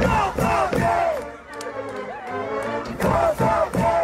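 A high-school football crowd in the bleachers shouting a cheer together, in two loud bursts: one at the start and another about three seconds in.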